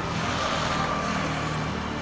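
Road traffic noise on a city street: a steady rush of passing motor vehicles.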